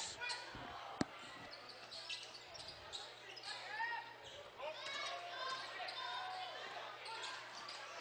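Basketball game sound in a school gym: a ball bouncing on the hardwood floor, with a sharp knock about a second in. Voices of players and spectators sound through the hall over a low steady hum.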